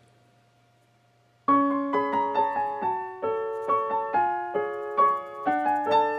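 Near silence for about a second and a half, then background piano music starts: a melody of struck notes, a few a second, each one dying away.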